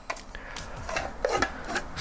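Rotating plastic lid of a pebble-shaped ashtray sliding shut over its opening, plastic rubbing on plastic in a few short scrapes.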